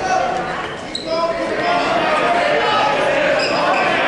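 Spectators' voices echoing in a large gymnasium, an indistinct chatter of several people talking.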